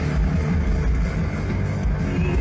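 A live goth-rock band plays loud, with heavy bass and drums, guitar and synths, in an instrumental stretch with no singing.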